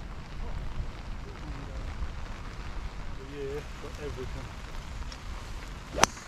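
Steady wind and rain noise on the microphone, with faint distant voices a little past halfway. Right at the very end, a sharp crack of a golf club driving a ball off the tee.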